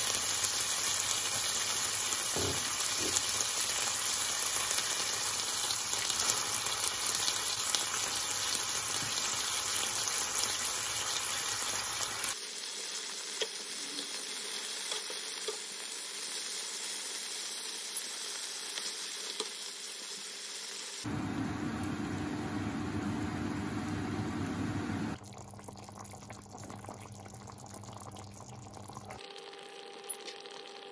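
Prunes and raisins sizzling in a non-stick frying pan, a steady hiss that is loudest for the first twelve seconds. The sound then drops and changes abruptly several times at edit cuts, ending much quieter.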